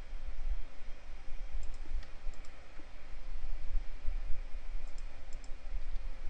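Computer mouse clicks: a few faint, sharp ticks around two seconds in and again near five seconds, over a steady low rumble.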